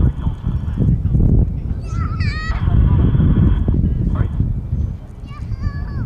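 Heavy low rumbling on the microphone throughout, with birds honking: a quick run of calls about two seconds in and another near the end.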